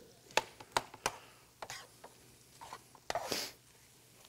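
Metal kitchen utensils clinking against a skillet and serving ware: several sharp taps in the first second and a half, then a short scraping rustle about three seconds in.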